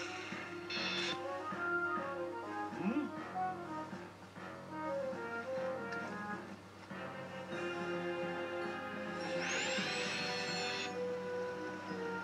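Cartoon soundtrack music: a light melody of short stepping notes. Near the end it is joined by a bright sound effect whose pitch arches up and falls back over about a second and a half.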